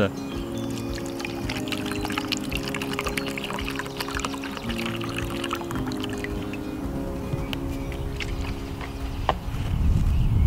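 Water poured from a plastic sports bottle into a plastic measuring jug, splashing and trickling for several seconds, over background music with sustained chords. A single sharp click comes near the end.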